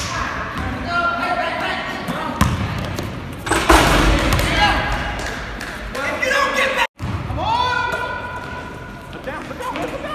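Indoor basketball game sounds: a ball bouncing on the court, short high squeaks of sneakers on the floor, and indistinct voices echoing in the gym. A loud burst of noise comes about four seconds in.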